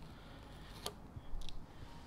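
Tape being peeled off a freshly powder-coated intake manifold, faint, with a sharp click a little under a second in and a short crackle about half a second later.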